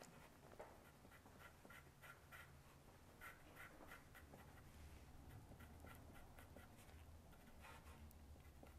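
Faint scratching of a graphite pencil on paper, a steady run of short shading strokes at about three a second.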